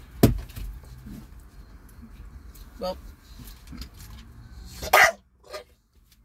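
Bulldog barking once, sharply, near the end, wanting the food in the vehicle. A sharp knock comes about a quarter second in.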